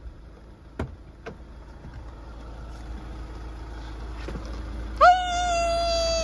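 A low outdoor rumble slowly growing louder, with a few sharp clicks, then near the end a woman's long, drawn-out, high-pitched "hé" call greeting her dogs.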